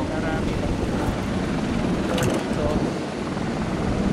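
Helicopter running: a steady, loud rumble and rush of noise, with faint voices underneath.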